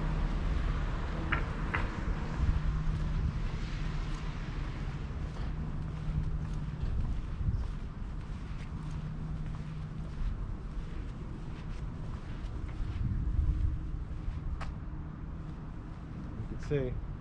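Outdoor background noise while walking: a steady low hum and rumble that fades in and out, with faint footsteps and a few short clicks, one sharper click near the end.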